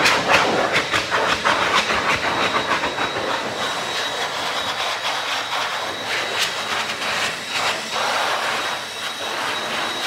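Electric hand dryer running, a loud steady rush of blown air with a faint high whistle, easing slightly in loudness through the seconds.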